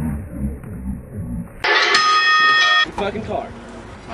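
Voices and laughter, then an abrupt cut to another recording: a steady pitched tone lasting about a second, followed by voices.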